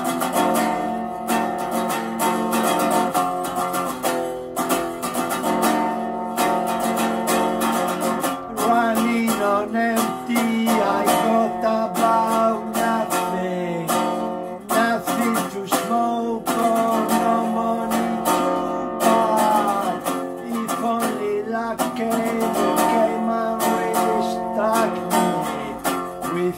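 Resonator guitar played acoustically, chords strummed and picked in a steady rhythm as a song's intro.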